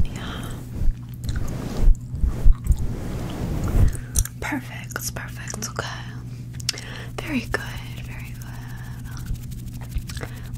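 Close-up chewing-gum mouth sounds, wet smacks and clicks, with low thuds from hands brushing past a fluffy microphone cover in the first few seconds.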